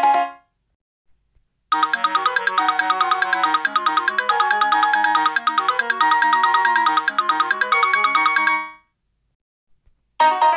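Chrome Music Lab Song Maker playing a short melody on its woodwind sound over a wood-block percussion pattern: quick stepped notes on a steady pulse. It starts about two seconds in and stops near the end, and the tail of a previous tune fades out at the very start.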